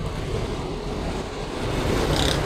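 Steady low rumble of street traffic and running vehicle engines.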